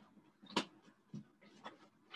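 Several short knocks and clicks of things being moved about on a desk, the loudest about half a second in.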